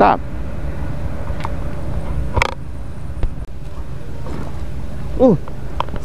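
Steady low outdoor rumble with a few light clicks, one sharper click about two and a half seconds in. A man's brief 'uh, oh' near the end.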